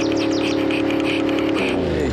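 Background music: a held chord with rapid, evenly spaced high pulses above it. Near the end the chord slides down in pitch and breaks up.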